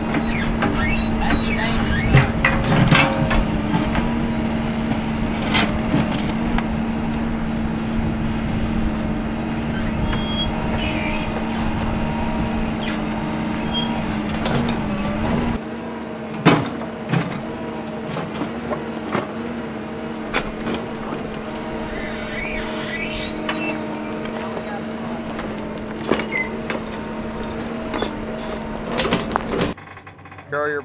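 Backhoe loader's diesel engine running at a steady pitch while the rear bucket digs in a rocky pit, with occasional sharp knocks and scrapes of the steel bucket against rock.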